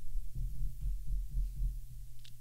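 Faint, irregular low thudding and rumble picked up by a close microphone, over a steady low hum.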